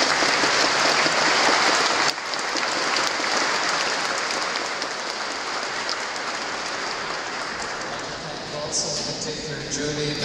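Congregation applauding in a large church, loudest over the first two seconds and then gradually dying down.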